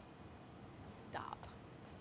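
A woman's quiet whispered, breathy sounds about a second in, a short hiss followed by a faint whispered murmur, with another brief hiss near the end, over low room tone.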